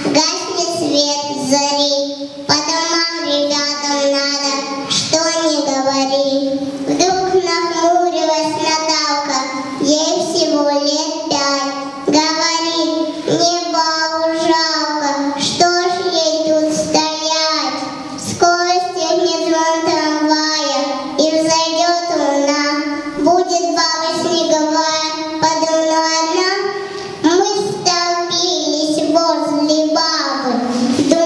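A young girl singing solo into a handheld microphone: a continuous melody of held, gliding notes.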